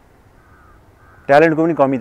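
A crow cawing loudly a few times, starting just past halfway, after a quiet stretch of open-air background.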